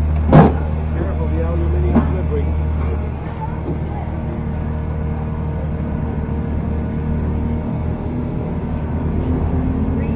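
A sharp, loud knock about half a second in and a smaller one about two seconds in, over a steady low hum that thins out after about three seconds.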